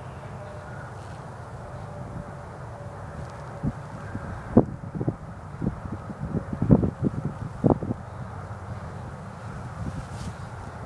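Steady low outdoor rumble of wind and distant traffic, with a cluster of short dull thumps and scuffs from about four to eight seconds in, the loudest near seven seconds.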